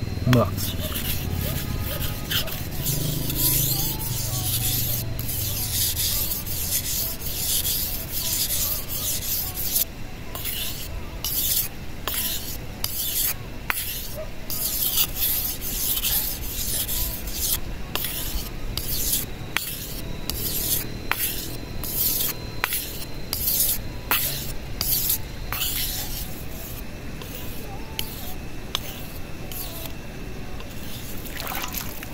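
A dao mèo (Hmong knife) blade being stroked along its edge on a natural sharpening stone: a rhythmic scraping rasp of steel on stone at about two strokes a second, growing a little quieter over the last few seconds.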